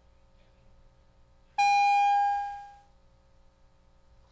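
A single chime of the division bell, a clean pitched tone that starts suddenly about one and a half seconds in, holds for about a second and then fades away, calling members in for a vote. A faint steady hum lies underneath.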